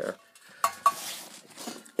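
Two light metallic clinks with a brief ring, a fraction of a second apart, amid rustling handling noise as metal exhaust parts are handled.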